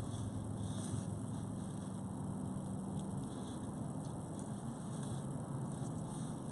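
Steady low background noise with a faint hum, and a few faint ticks and rustles as leather cord is pulled and worked tight into a knot by hand.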